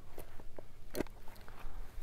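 Small hinged metal tin being handled and opened: a few faint clicks and taps, the sharpest about a second in.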